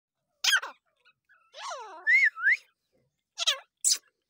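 Dakhni teetar (a partridge) calling: a sharp call about half a second in, then a run of rising and falling whistled notes, and two more sharp calls near the end.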